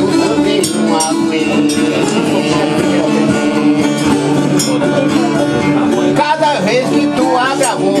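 Brazilian ten-string viola playing the instrumental baião between the cantadores' sung stanzas, plucked over a steady ringing open-string drone. A voice comes in right at the end.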